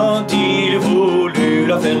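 Nylon-string classical guitar strummed in a steady rhythm of chords, with a man's voice singing a French chanson over it in held, wavering notes.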